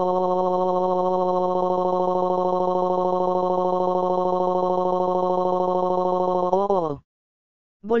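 Text-to-speech voice holding a single drawn-out vowel at one flat pitch, a synthetic scream of a man losing his arm. About six and a half seconds in it wavers and drops in pitch, then cuts off abruptly, and a short silence follows.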